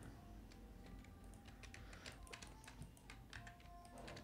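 Faint computer keyboard and mouse clicks: scattered light taps in near silence.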